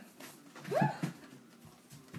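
A single short, high-pitched vocal whine that rises and then falls, lasting about half a second, a little over half a second in.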